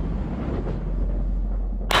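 A low, steady rumble with a faint hiss above it, with no speech. It ends with a sudden jump in sound just before the two-second mark.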